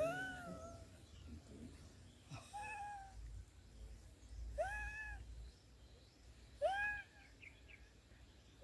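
A cat meowing faintly, four short rising-and-falling meows about two seconds apart.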